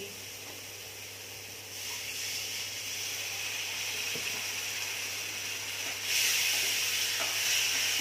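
Onion-tomato masala in hot mustard oil in a steel kadhai, sizzling as a spoonful of water goes in. The sizzle starts about two seconds in and grows louder about six seconds in.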